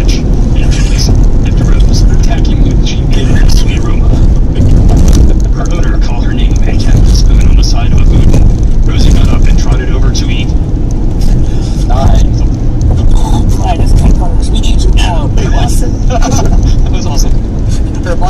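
Steady low road and engine rumble inside a car cruising at highway speed, with faint voices now and then over it, mostly in the second half.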